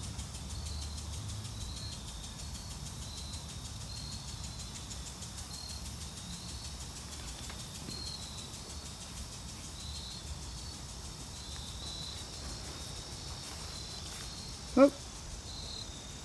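A cricket chirping in short, evenly spaced high chirps a little more than once a second, over a low steady background rumble.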